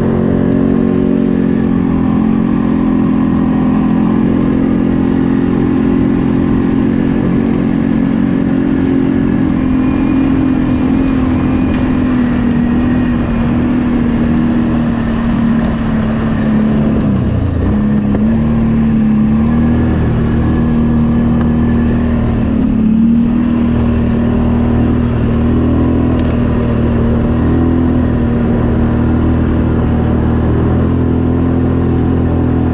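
ATV engine running steadily under way. Its note dips briefly a little past halfway and then picks back up.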